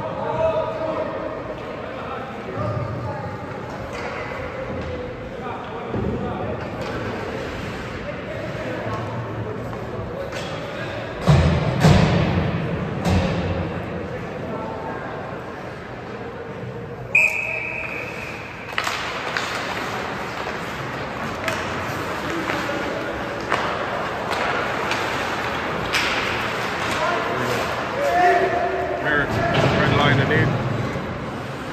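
Ice hockey rink sound: voices from the players and the crowd, with sticks and puck knocking and thudding against the boards, loudest near the middle. A single short, high whistle blast sounds a little past halfway.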